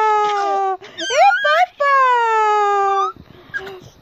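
A baby vocalising in long, drawn-out wails that fall slowly in pitch, two of them, with short rising squeals between them.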